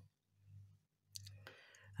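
Near silence, with a few faint clicks a little past the middle.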